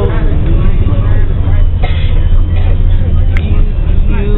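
Steady low rumble of a moving bus's engine and road noise, with voices softer underneath it.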